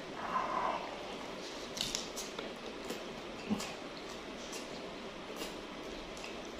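Quiet chewing and mouth sounds of a person eating, with a few small, scattered crunches and clicks.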